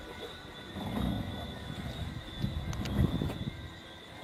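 Wind buffeting a camera's microphone aboard a sailboat under way, coming as uneven gusts of low rumble, strongest about a second in and again around three seconds, with a thin steady high tone behind it.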